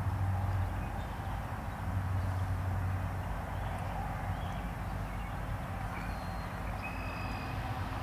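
Outdoor background of a low, steady rumble from distant road traffic, a little stronger in the first few seconds.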